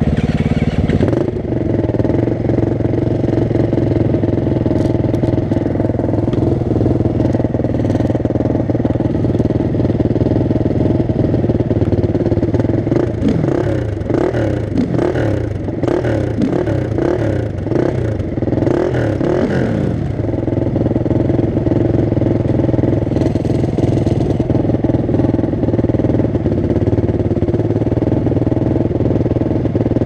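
Four-stroke 450 cc single-cylinder dirt bikes idling steadily. For several seconds in the middle the pitch wavers up and down.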